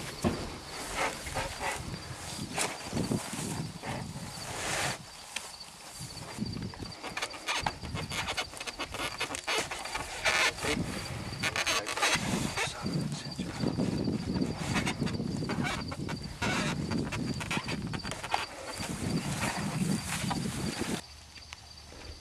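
Irregular rustling and crackling of hands working electrical tape around a pump's drop wire, nylon safety rope and black poly pipe. A steady high cricket chirp runs underneath and fades out about a second before the end.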